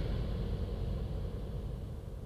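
Low, steady rumble of background ambience with a faint hiss, fading gradually.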